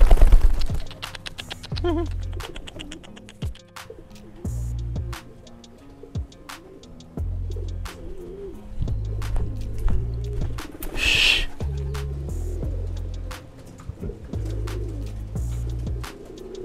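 A pigeon's wings clapping loudly as it is thrown from the hand, then domestic pigeons cooing, with bouts of low wind rumble on the microphone coming and going.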